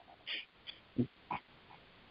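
A pause in speech: a short, quiet intake of breath, a small mouth click, then one brief spoken word.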